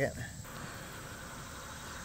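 A man's voice trails off at the start, then a steady faint outdoor background hiss with no distinct events.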